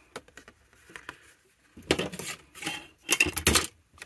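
Small hard craft tools clattering and clinking as they are rummaged through in search of a pair of snips: faint clicks at first, then a clatter about two seconds in and a louder one just past three seconds.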